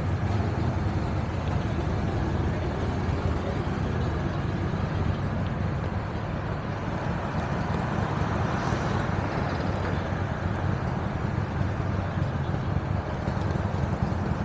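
BMW R1250RT boxer-twin engine idling steadily, with city street traffic around it.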